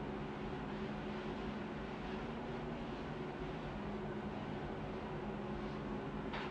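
Steady low hum with a faint hiss, unchanging throughout.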